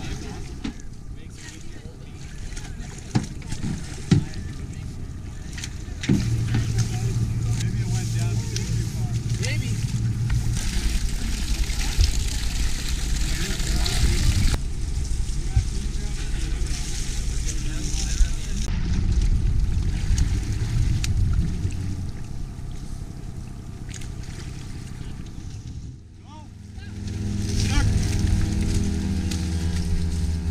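Outdoor field sound by a river: wind on the microphone, water and indistinct voices, with a few knocks, changing abruptly several times; in the last few seconds a motor runs steadily.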